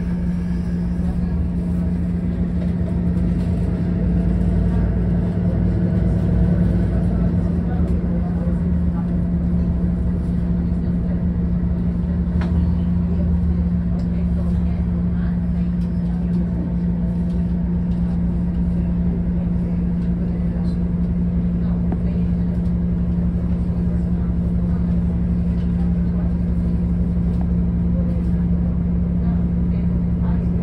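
Inside a city bus as it drives: a steady low drone from the engine and drivetrain, with a constant hum and road rumble.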